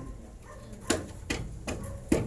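Three sharp knocks in even succession, about 0.4 s apart, starting about a second in, over a low steady rumble.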